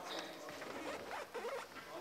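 Indistinct background talk of several people in a large chamber, with a light rustle.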